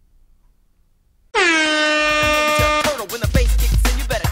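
An air horn sound effect starts suddenly about a second in after near silence, with a slight upward scoop, and is held for about a second and a half. Heavy bass and a hip-hop beat come in under it and carry on once it stops.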